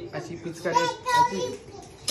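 A toddler's voice, babbling and calling out in play without clear words, with a short high-pitched call about a second in.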